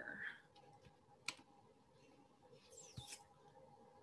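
Near silence with a single sharp click of a computer mouse button about a second in, and a fainter brief sound just before three seconds.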